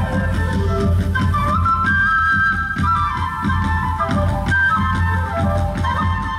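Music with a high, held melody stepping from note to note over a steady low beat.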